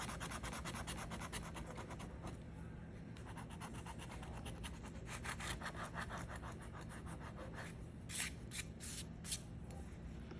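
A coin scratching the silver coating off a scratch-off lottery ticket in quick back-and-forth strokes. It is dense at first, fainter in the middle, and ends in a few separate strokes near the end.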